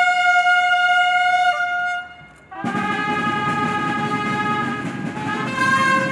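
Brass instruments playing long held notes. One sustained note breaks off about two seconds in, and after a short gap a fuller, deeper sound comes in, moving to a new note near the end.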